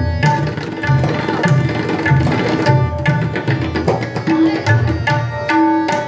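Two tabla sets played together in teental, the 16-beat cycle: quick, crisp strokes on the small dayan drums over deep, booming strokes on the bayan. A steady, repeating lehra melody sounds underneath.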